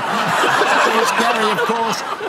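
A man laughing in a run of short chuckles.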